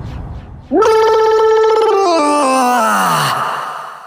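A long drawn-out, groan-like vocal wail: it starts loud about a second in, holds one pitch, then slides down in steps to a low growl and dies away. A low rumbling whoosh fades out under its start.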